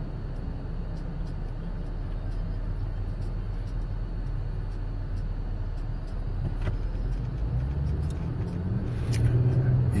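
Low, steady rumble of a car heard from inside its cabin.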